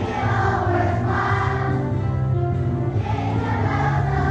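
Elementary school children's choir singing a song, with instrumental accompaniment carrying steady low bass notes.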